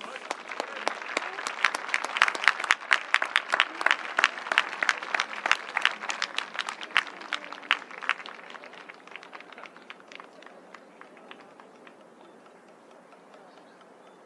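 Stadium spectators clapping in support of an injured batter walking off after a pitch struck his helmet. The claps build right away, are loudest a couple of seconds in, then thin out and die away by about ten seconds in.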